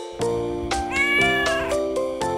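A tabby cat meows once, about a second in: a single short call that rises slightly and falls away. It is heard over background music.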